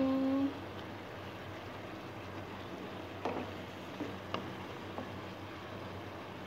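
Chicken simmering in tomato sauce in a nonstick frying pan, a steady soft hiss, with a few light knocks of a wooden spatula against the pan a few seconds in as it is stirred.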